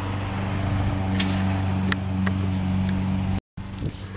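A motor running steadily, a low even hum with a few faint clicks; the sound cuts out for a moment near the end.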